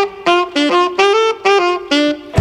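A clarinet playing a solo line of short, detached notes, about three a second, with little accompaniment behind it.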